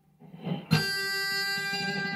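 Electric guitar, an Epiphone semi-hollow body, sounding a single pinched harmonic: one picked note with the side of the thumb catching the string, so that high overtones ring out strongly. It starts a little under a second in and sustains steadily.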